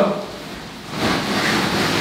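Nylon fabric of a pop-up tent rustling as it is pulled and settled into shape, a steady noisy rustle starting about a second in.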